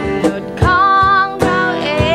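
Two acoustic guitars strumming chords while a girl sings, holding one long note from about half a second in.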